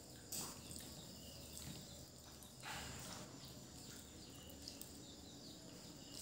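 Quiet room tone with two brief, faint soft noises, one just after the start and one near the middle.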